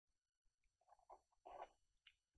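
Near silence, with faint small scratching and rustling in the second half as a paper sticker sheet is handled.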